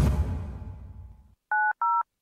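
Two short touch-tone telephone keypad beeps, one right after the other near the end, each a pair of tones sounding together. Before them a low sound fades out over the first second or so.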